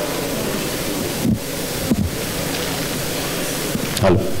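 Steady hiss from a live microphone and sound system, with two short low thumps a little after a second in: microphone handling noise as a mic is checked after failing to carry the voice.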